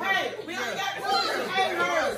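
Several people talking over one another in a lively group chatter.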